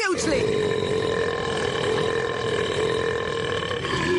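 Cartoon laser-zap sound effect: a steady, raspy electric buzz that drops in pitch at the very start, then holds one pitch, and cuts off at the end.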